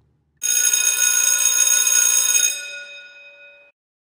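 A loud electric bell ringing, with many steady ringing tones, starting about half a second in. It dies away after about two seconds and cuts off shortly before the end.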